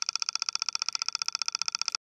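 A rapid, even ticking of about twenty ticks a second with a thin high ring, cutting off suddenly at the very end.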